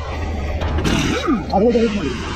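A person's voice calling out, wordless, with a drawn-out rise and fall in pitch in the second half, over a steady low hum.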